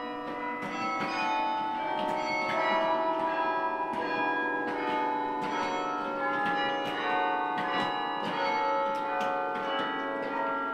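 Carillon bells played from the baton keyboard: a melody of struck notes, each starting sharply and ringing on, so that the notes overlap and blend.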